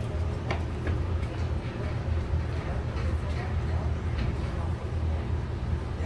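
Steady low background hum, with a few faint light clicks in the first second or so.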